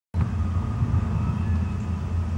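Rows of small wooden dominoes toppling over on a wooden floor, their many falls blending into a steady, low clatter.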